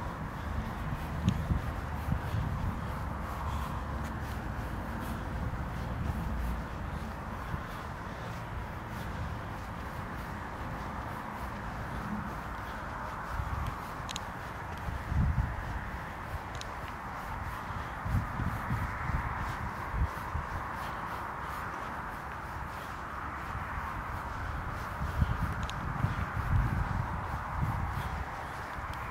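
Outdoor ambience with a steady hiss and irregular low thumps on the microphone of a handheld camera being carried on foot.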